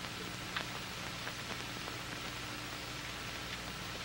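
Steady hiss and low hum of an old, worn television recording, with a few faint clicks, the loudest about half a second in.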